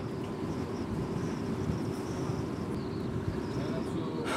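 Steady wind noise and a low ship's hum on an open bridge wing at sea, with no distinct events.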